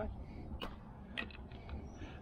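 Two light clicks about half a second apart, as a fish club is handled and set down on a gravel path, over faint outdoor background noise.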